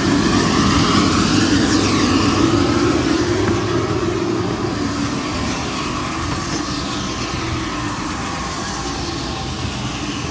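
Steady engine noise of an airport apron shuttle bus, heard from inside the bus. A couple of faint falling whines come through, and the noise eases slightly after a few seconds.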